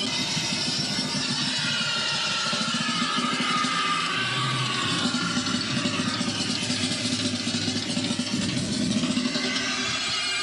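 A motor engine running, with a tone that falls slowly in pitch over several seconds.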